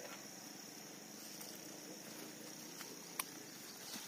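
Faint, steady, high-pitched drone of insects, with one short sharp click about three seconds in.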